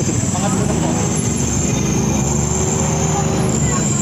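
Steady outdoor street and traffic noise, with the engine of a passing vehicle rising and falling in pitch about halfway through, and a thin, high, steady whine above it.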